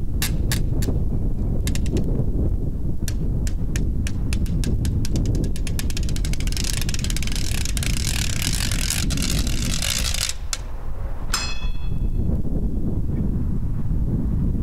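A small drum beaten with sticks in scattered single strokes, then a fast roll lasting about four seconds, followed by a brief high squeak. A low wind rumble on the microphone runs underneath.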